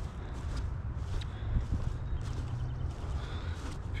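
Soft footsteps on wet grass, a step every half second or so, over a steady low wind rumble on the microphone.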